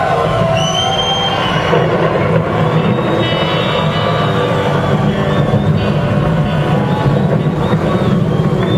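Live rock band playing, led by electric guitar, recorded from the audience with a heavy steady low drone underneath. A short high whistle sounds over the music about half a second in.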